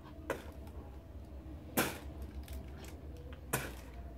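Three short handling noises from hands working in a plastic bag, the loudest about two seconds in, over a steady low hum.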